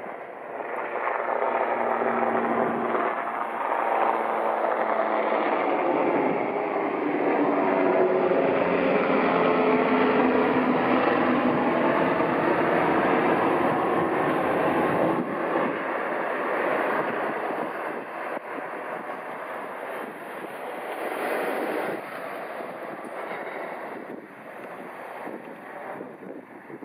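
Incat Crowther 40 m high-speed catamaran ferry running at speed as it passes: a continuous engine roar with faint shifting tones. It swells about a second in, holds loudest through the middle and fades away over the last ten seconds.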